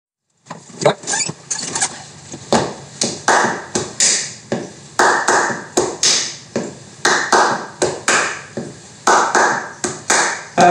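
Bare hands clapping and slapping out a rhythmic pattern that starts about half a second in. There are roughly two to three strikes a second, mixing sharp crisp claps with duller slaps, and the pattern repeats about every two seconds.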